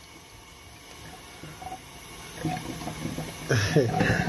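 Kitchen tap running steadily, its water splashing onto raw chicken pieces in a stainless steel steamer basket in the sink.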